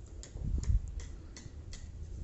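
A run of sharp, evenly spaced clicks, about three a second, with a dull thump about two-thirds of a second in.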